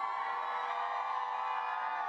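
Women in a concert crowd screaming in answer to a call from the stage: a steady, held mass of high voices.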